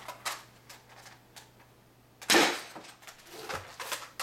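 A homemade foam-dart pump-action blaster being loaded through its plastic-tube speed loader: a few light plastic clicks, then one loud, short clatter a little past halfway.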